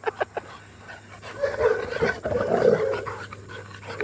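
Dogs playing: quick rhythmic panting at the start, then, about a second and a half in, a drawn-out wavering vocal sound like a play growl.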